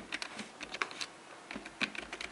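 Keystrokes typing: irregular sharp clicks, about four or five a second, as login details are entered.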